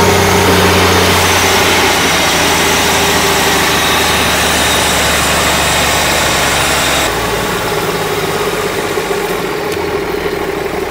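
Diesel engine driving a 600-volt DC generator, running steadily while the generator lights a bank of incandescent lamps as a test load. About seven seconds in, the sound drops abruptly to a quieter, duller running note.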